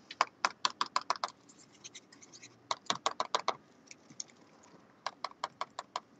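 An adhesive glue pen being primed: three quick runs of sharp clicks as its tip is pumped repeatedly to get the adhesive flowing.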